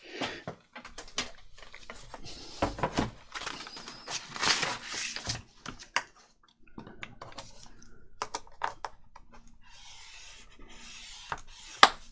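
Patterned paper being handled and slid into position on a plastic scoring board: bursts of paper rustling and sliding with scattered light taps, and one sharp tap just before the end.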